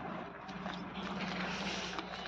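A steady, low engine hum from a distant motor vehicle, holding one pitch without rising or falling.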